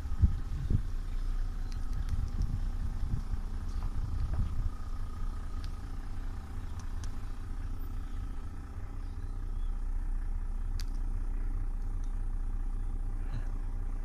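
A vehicle engine idling: a steady low rumble with a faint steady hum above it.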